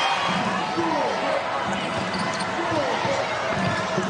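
A basketball being dribbled on a hardwood court, with short squeaks and the steady noise of an arena crowd.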